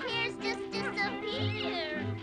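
Cartoon soundtrack music with a steady bass pattern, with short, high, gliding, wavering cries over it, heard by a tagger as meow-like.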